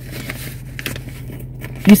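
Faint rustling and scraping of a clear plastic zippered pouch being handled and its zipper worked, over a steady low hum from inside a car with the engine running.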